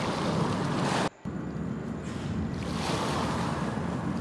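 Sea waves and surf sound effect: a steady rushing wash of water that drops out abruptly for a split second about a second in, then carries on.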